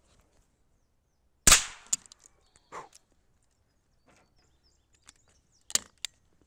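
A single shot from a Chiappa Little Badger, a small-calibre break-action rifle, about a second and a half in. A few light clicks of handling follow, then a sharp metallic crack near the end as the action is worked.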